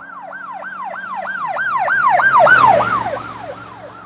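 Electronic emergency-vehicle siren in a fast yelp, about four rising-and-falling wails a second. It grows louder towards the middle, then fades away, over a steady low hum.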